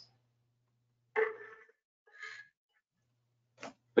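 Mostly silence, broken by short breaths from a person at a microphone: one about a second in, a fainter one a second later, and a quick intake of breath just before speech resumes.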